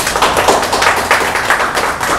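A group of people applauding: a dense, steady patter of many hands clapping.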